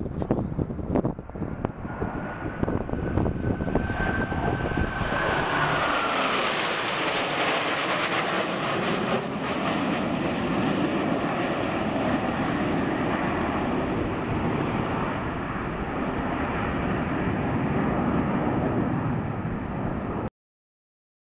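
Jet engine roar of the six-jet Blue Angels F/A-18 formation flying over, swelling about five seconds in and then holding steady, with a high whine that drops in pitch as they pass. A few sharp thumps in the first second.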